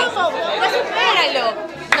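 Speech only: people talking over one another in a crowded room, with a short sharp click near the end.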